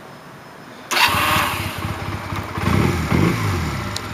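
2003 Honda CM125 Custom's air-cooled parallel-twin engine, already warm, starting about a second in and then running, with a brief rise and fall in revs near the end.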